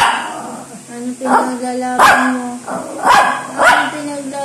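A small Shih Tzu barking about five times in short, sharp barks, begging for bread.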